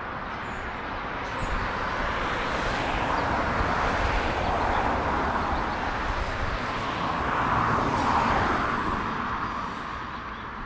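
Rushing vehicle noise that swells twice, about four and about eight seconds in, and fades near the end.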